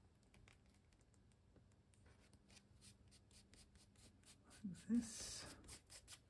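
Fingertips rubbing and pressing a torn piece of paper down onto a book page: a faint run of quick, scratchy strokes, several a second. About five seconds in comes a short, low murmur of voice with a louder rustle.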